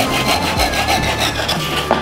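Handsaw cutting a wooden dowel flush with a wooden floor, the blade laid flat on the boards, in quick back-and-forth strokes. A sharp knock comes near the end.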